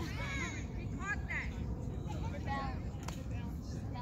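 Distant voices calling across a baseball field over a steady low rumble, with one sharp click about three seconds in.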